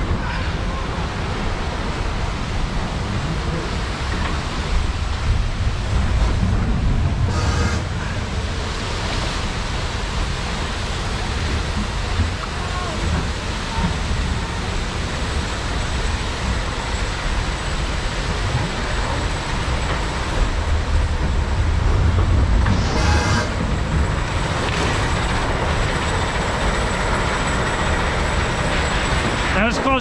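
Log flume ride in motion: a steady rush of water and air noise over a low rumble, with two brief louder bursts of noise, about seven seconds in and again around twenty-three seconds.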